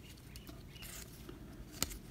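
Faint rustle of trading cards being slid through the hands, with one short sharp click near the end.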